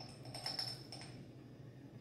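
Faint light clicks of a metal spoon scooping matcha powder from a small jar, with a faint steady high tone that fades about a second in.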